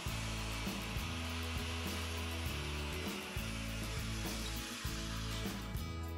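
Handheld power saw cutting steadily through the top of a wooden post, stopping near the end, over background music.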